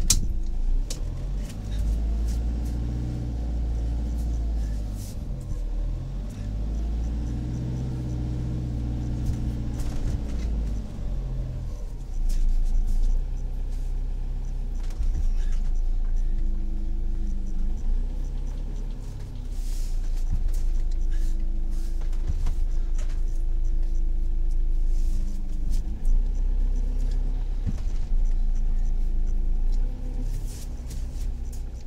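Motorhome engine pulling the vehicle along at low speed, with a strong low rumble. The revs rise and fall several times, and climb higher around the second and eighth to tenth seconds.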